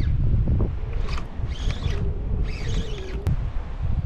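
Wind buffeting the microphone in a strong, uneven low rumble, with a faint steady hum underneath, a few short hissing spells in the middle and a single sharp click near the end.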